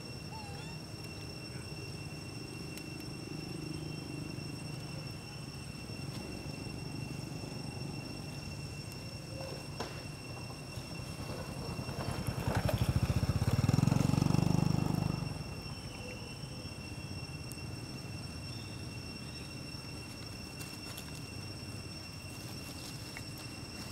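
A low engine rumble from a passing motor vehicle builds about halfway through, stays loudest for a couple of seconds, then falls away quickly. Under it and throughout runs a steady high-pitched drone typical of insects.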